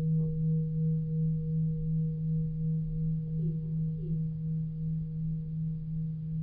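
Singing bowl ringing: one low steady tone with a fainter higher overtone, wavering slowly and evenly in loudness.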